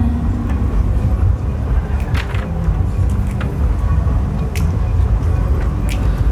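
A steady, loud low rumble with a few brief faint clicks or hisses.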